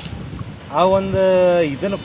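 A man's voice at a handheld microphone, holding one long drawn-out 'aah' for about a second, with wind rumbling on the microphone before it.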